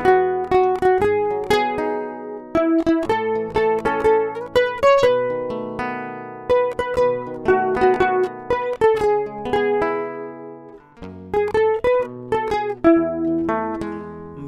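Instrumental introduction to a football club anthem played on plucked strings: a melody picked note by note over sustained chords, each note struck sharply and then fading. There is a brief lull about three quarters of the way through before the playing resumes.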